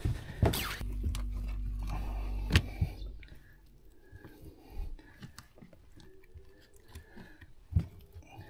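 Handling noise as a freshly caught barramundi is laid on a measuring strip on a boat's carpeted deck: a few sharp knocks and quieter rustling and clicks. A steady low hum runs for about two seconds near the start.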